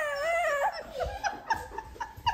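Six-month-old baby whimpering and fussing: a wavering, wailing cry in the first half-second or so, breaking into short sobbing fragments.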